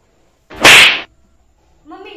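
A single loud slap with a swishing edge, about half a second long and about half a second in: a balloon being slapped down onto a person's head.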